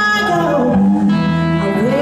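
Live blues-rock band playing: electric guitar with a woman singing long held notes over it.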